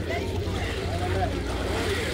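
A group laughing with a few spoken words, over a steady low rumble.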